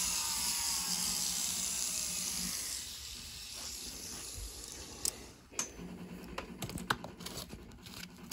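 A rotary carving handpiece winds down after grinding walrus ivory, its whine falling in pitch and fading over the first few seconds. Then come sharp clicks and crinkling as sandpaper is handled.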